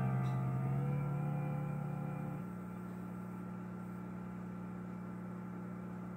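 The last notes of a Casio CTK-7200 keyboard ring on and fade after the playing stops. By about two and a half seconds in, only a faint steady low tone is left.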